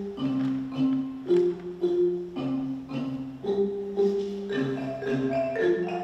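Ensemble of Orff-style wooden xylophones and marimbas played with mallets: a steady, repeating interlocking melody with ringing low notes and brighter upper parts.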